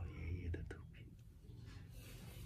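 A person speaking softly, close to a whisper, in the first part, with a couple of light clicks.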